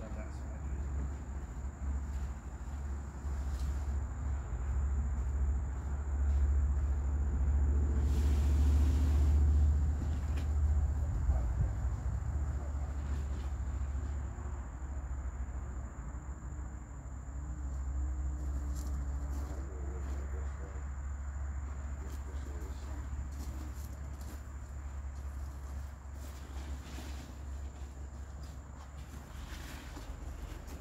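Outdoor ambience: a steady high-pitched insect trill over a low rumble that swells and is loudest about eight to twelve seconds in.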